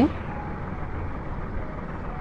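Steady low background hum and hiss, with no distinct sounds.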